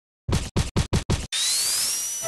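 Intro sound effect: five quick record scratches in a row, then a whoosh rising in pitch about two-thirds of the way in.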